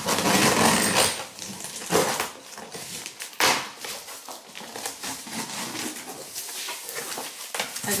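Scissors slitting the packing tape on a large cardboard box, then the cardboard flaps being pulled open, a run of harsh tearing and scraping noises that are loudest in the first few seconds.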